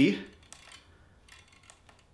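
A few faint, short plastic clicks from a clip-on tuner's mode button being pressed as it steps through its instrument settings.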